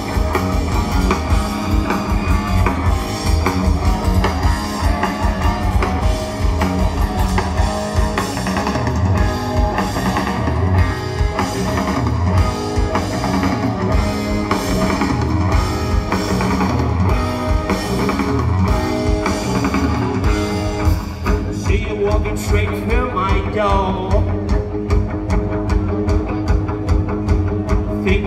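Live rock band playing: electric guitar, bass guitar and drum kit.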